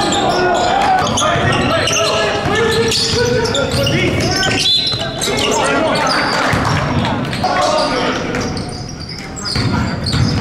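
Basketball bouncing on a hardwood gym floor during play, with players' voices calling out in the large, echoing hall.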